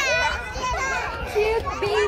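Young children's high voices calling and chattering as they play, with no clear words.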